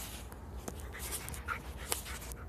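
A dog breathing close to the microphone. Under it are a low wind rumble on the microphone and a few short clicks.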